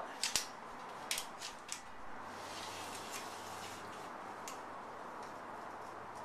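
Light handling sounds of a steel tape measure pulled along a bent steel-tube rocker and a marker marking it: a few small sharp ticks in the first two seconds and one more later on, over a faint steady hum that comes in about two seconds in.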